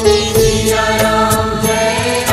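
Devotional Hindu chant music, a bhajan to Ram: a sung chanting voice over instruments with a steady percussion beat.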